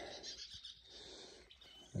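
Faint bird chirping in a quiet outdoor background.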